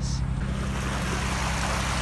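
A trawler's inboard engine running steadily at a slow cruise, a low even hum, under the rush of water and wind as the boat moves through the water.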